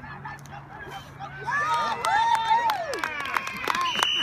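Several people shouting and cheering in high, excited voices, growing louder about one and a half seconds in as a flag football play develops.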